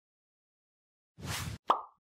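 Logo-intro sound effects: a short whoosh a little over a second in, then a sharp pop that is the loudest thing and dies away quickly near the end.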